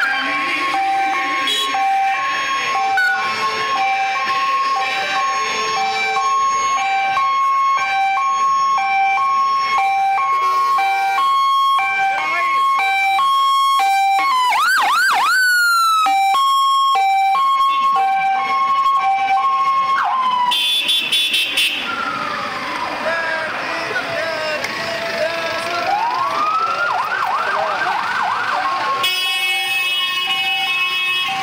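Fire engine's two-tone siren alternating between a high and a low note. Midway it breaks briefly into a rising and falling wail, and it goes to gliding sweeps again later before the two notes return near the end. Voices shout around it.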